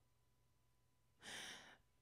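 Near silence, broken about a second and a quarter in by one short, faint exhale into a close microphone.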